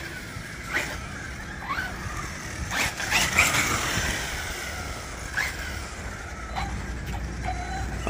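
Brushless electric drivetrain of an Arrma Typhon TLR Tuned 1/8 RC buggy (1650 kV Max6 motor on 6S) whining up and down in short throttle blips on light throttle, with tyre noise on concrete. There are several rising and falling whines, the strongest about three seconds in.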